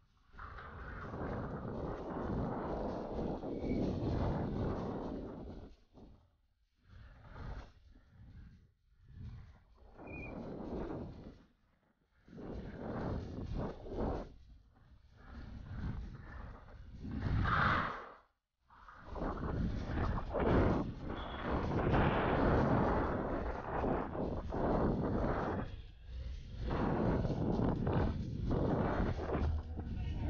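Wind buffeting an action camera's microphone, mixed with trail noise from a downhill mountain bike at speed. It comes in uneven gusts with several brief dropouts.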